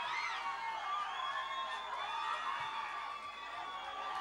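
Crowd cheering, with many high-pitched voices overlapping.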